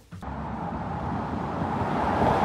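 Car running on asphalt, engine and tyre noise rising gradually in level after a moment's quiet at the start.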